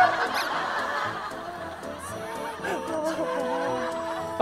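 People laughing and chuckling over background music, with steady held notes in the second half.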